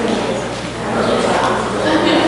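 A person's voice, speaking at a distance in a large room so that the words are hard to make out.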